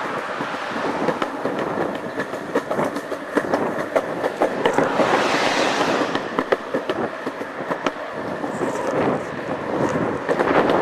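Continuous rolling and rattling noise, dense with small clicks and knocks, from a handheld camera jostled while moving along a street. It swells louder about halfway through.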